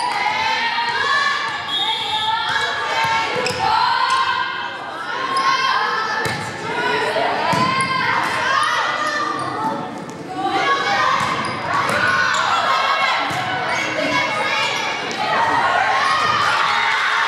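Volleyball rally on a hardwood gym court: the ball being struck and hitting the floor in sharp knocks, under a steady mix of players' and spectators' shouts and cheers, echoing in the large hall.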